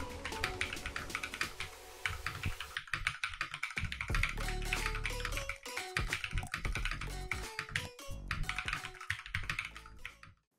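Fast typing on a custom mechanical keyboard built from a Feker FK84T kit with Akko CS Vintage White linear switches and XDA-profile PBT keycaps: a dense, continuous stream of keystroke clacks. Background music plays over it.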